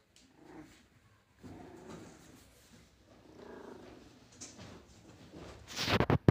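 Three-week-old husky puppies making faint low whining, grumbling sounds, two longer ones about one and a half and three and a half seconds in. A louder scuffing noise swells just before the end.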